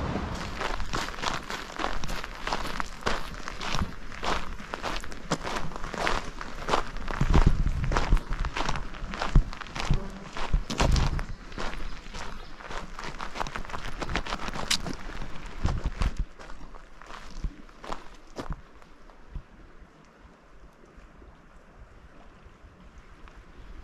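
Footsteps walking steadily on paving and gravel, about two steps a second, with low wind rumble on the microphone; the steps die away near the end.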